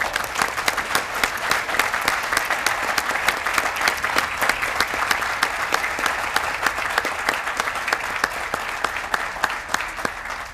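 An audience applauding: many hands clapping in a dense, sustained patter, easing slightly toward the end.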